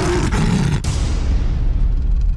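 Title-card sound effect: a loud, steady, deep rumbling noise whose high hiss thins out after about a second.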